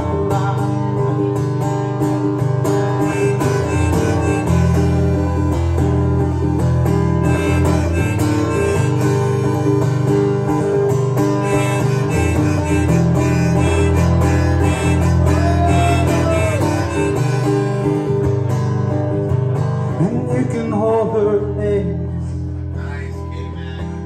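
Acoustic guitar strummed steadily with a harmonica played from a neck rack over it, an instrumental break between verses of a folk song; it softens a little near the end.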